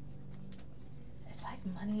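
Soft background music holding steady low tones, with faint rustling and light clicks of tarot cards being handled. About one and a half seconds in, a voice starts speaking.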